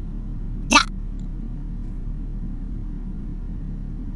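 A single brief vocal sound from the man, less than a second in, rising slightly in pitch, over a steady low electrical hum and hiss from the recording.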